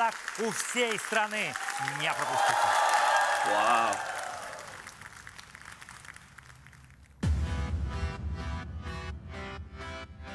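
A man's voice speaking in Russian for about two seconds, then a studio audience applauding, dying away over the next few seconds. About seven seconds in, music starts abruptly.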